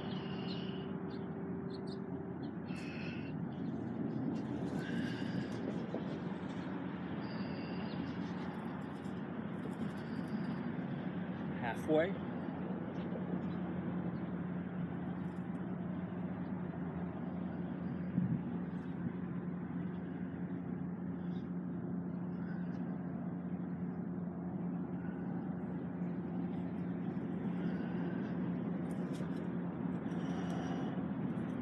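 Steady outdoor background rumble with a low, even hum. A short rising whistle-like sound comes about twelve seconds in.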